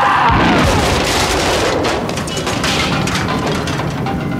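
An explosion and a burning fire on a film soundtrack: a deep rumble with dense crackling throughout.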